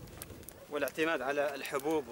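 A wood fire crackles faintly under a cooking pot with a few small clicks, then a person's voice starts a little under a second in and goes on to the end.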